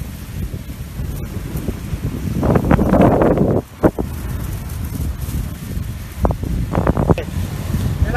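Wind buffeting a phone microphone, a steady low rumble, with louder stretches about halfway through and again near the end.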